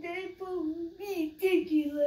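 A young boy singing in a high, sing-song voice, holding a string of short notes.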